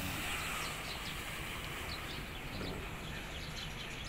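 Steady outdoor background noise with a faint low hum, and short, faint high chirps of birds scattered through it.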